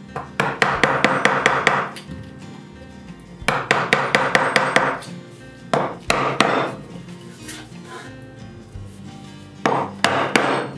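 Chisel cutting into an oak slab by hand: rapid runs of light sharp taps, in bursts of one to two seconds with short pauses between.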